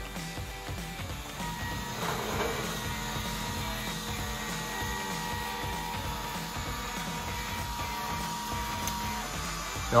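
Stepper motors of a Modix Big-120X large-format 3D printer moving the print head across the bed to the front leveling-screw position. The steady whine starts about a second and a half in and stops shortly before the end.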